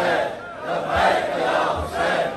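A large crowd of men chanting a slogan in unison, loud, repeated about once a second.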